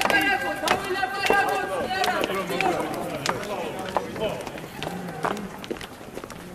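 Raised voices calling out, strongest in the first two seconds and fading after, with sharp knocks scattered through.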